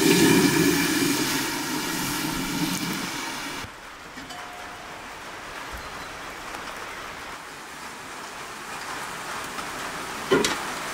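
Liquid pouring into a large aluminium pot, a loud steady rush with a metallic ring, stops abruptly about three and a half seconds in. A quieter steady hiss follows.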